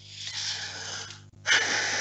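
A person breathing close to the microphone: two breathy rushes of air, the second one louder.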